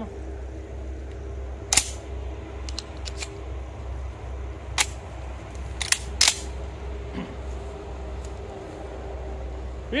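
12-gauge Huglu GX812S shotgun being loaded by hand: a few sharp metallic clicks as shells are pushed into the gun, one about two seconds in, light ones around three seconds, and a quick cluster around five to six seconds.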